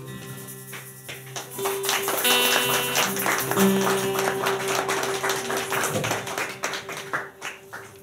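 Live acoustic music: strummed acoustic guitars with sustained chords and quick hand-drum strikes, dying away near the end.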